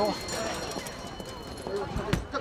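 Busy street with several voices talking in the crowd and a horse's hooves clip-clopping on the road.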